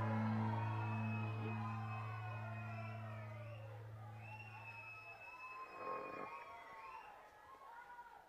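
A live band's held low chord slowly dying away over about five seconds, with faint crowd noise from the audience behind it.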